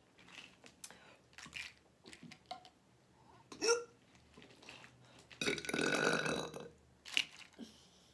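A woman burping: a short burp just before four seconds in, then a long, loud one about five and a half seconds in that lasts over a second.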